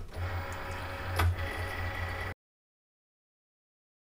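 Cricut cutting machine's motors whirring steadily as its rollers draw the cutting mat in to load it, with a sharp click about a second in. The sound cuts off suddenly a little over two seconds in.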